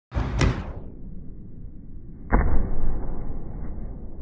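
Thuds of running footfalls on gym mats and hands slapping down on padded vault boxes during kong vaults, with a strong thud a little over two seconds in.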